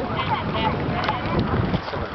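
Wind buffeting the microphone, with people talking in the background.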